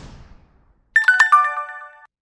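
The tail of a whoosh fading out, then about a second in a short chime of a few quick notes stepping down in pitch that ring briefly: the sound effect of an animated YouTube Subscribe button.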